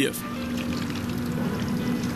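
Water running steadily from a kitchen tap during dishwashing.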